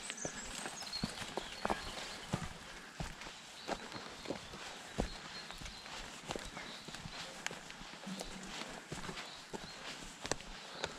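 Mountain bike climbing a rough, stony dirt trail: tyres crunching over loose ground, with sharp knocks about every two-thirds of a second.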